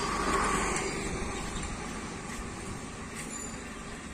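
A road vehicle passing: an even rushing noise that swells in the first second and then slowly fades.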